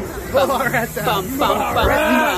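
A hiss, with people's voices over it from about half a second in.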